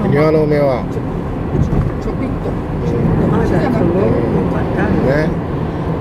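Steady engine and road rumble inside a moving car's cabin, with a voice speaking indistinctly during the first second and again around the middle.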